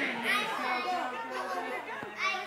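Toddlers' voices and adults' chatter mixed together in a large hall, with a child calling out and babbling over the talk.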